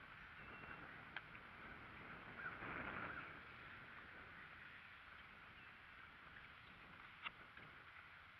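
Near silence: faint outdoor ambience, with a slight swell a few seconds in and two small clicks.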